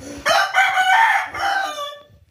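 A rooster crowing once: a single long crow lasting most of two seconds that falls in pitch as it trails off.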